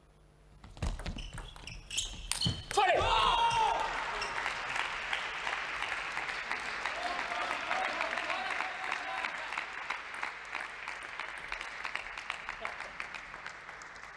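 Table tennis rally: the celluloid-type ball clicking off bats and table for about two seconds, ending in a couple of hard hits. A shout follows, then applause and cheering from a small crowd in the hall that fades near the end.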